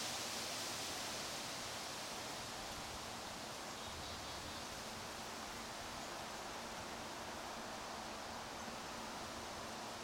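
Steady, even outdoor background hiss with no distinct sounds in it, a little louder in the first second.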